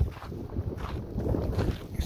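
Wind buffeting the microphone: a gusty, fluctuating low rumble.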